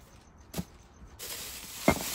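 Thin plastic bag rustling and crinkling as it is handled, starting a little over a second in, with a sharp tap just before the end.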